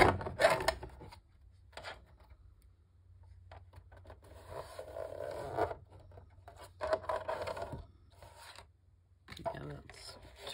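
Cutter head of a deckle-edge paper trimmer run along its rail through photo paper, making several rough scraping strokes, the longest over a second. It is the harsh noise this trimmer is known for.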